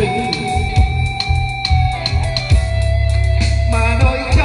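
A live band plays an instrumental break with no vocal. Guitar leads over keyboard, with sustained low bass notes and a steady beat.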